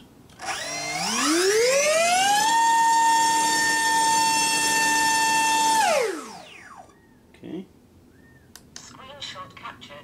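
HobbyZone AeroScout S2's electric motor spinning a Master Airscrew 5x4.5 three-blade bull-nose propeller up to full throttle on a static thrust test: a high whine that rises in pitch, holds steady for about three and a half seconds at around 18,300 rpm, then winds down quickly.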